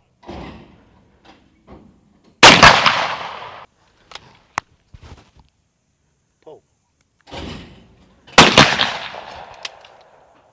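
Two over-under shotgun shots at clay targets, about six seconds apart, each a sharp crack with an echo that trails off over about a second. A softer sound comes about a second before each shot, and there are a few light clicks between them, one near the end as the gun is broken open.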